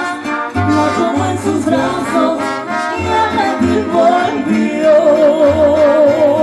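A live mariachi band playing: trumpets over strummed guitars with a deep, regularly plucked bass line. Near the end a long wavering note is held over the band.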